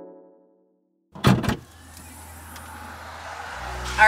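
A music tail fades out; then, after a moment of silence, the 2018 GMC Terrain's rear liftgate unlatches with a loud clunk a little over a second in and swings open. Steady outdoor noise follows and slowly grows louder.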